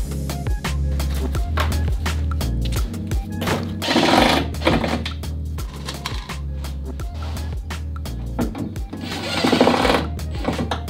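Background music, over which a cordless drill-driver drives screws in two short bursts, about four seconds in and again near the end.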